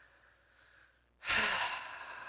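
A woman's faint intake of breath, then about a second in a loud, breathy sigh close to the microphone that runs on for over a second.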